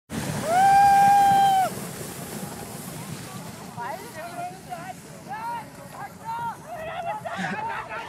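A person's long high-pitched yell, held for about a second, then a string of shorter high shouts and squeals from about halfway through, over a steady rushing noise of a sled sliding down packed snow.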